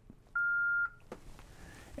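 Yaesu FTM-500D mobile transceiver giving a single steady beep of about half a second as its knob is pressed to confirm a factory reset. The beep signals that the reset has been accepted and is starting.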